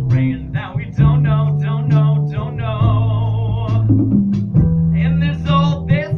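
A man singing a musical-theatre song live, with vibrato on held notes, accompanied by guitar and deep sustained bass notes.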